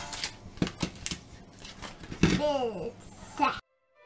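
Plastic Lego bricks clicking and rattling as they are handled and fitted together, several sharp clicks. A child says a single word about two seconds in, and the sound cuts off suddenly near the end.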